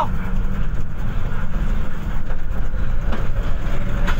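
Steady low rumble of a moving public passenger vehicle, heard from inside the crowded cabin.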